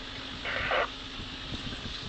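Four-wheel-drive vehicle's engine running steadily as it drives a rough dirt trail, with a few low knocks from bumps near the end. A short loud hiss-like burst comes about half a second in.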